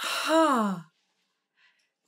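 A woman's voiced sigh, under a second long, sliding down in pitch.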